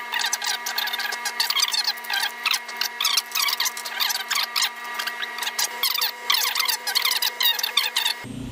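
A man's talking played fast-forward, turned into rapid, high, squeaky chatter over a steady hum.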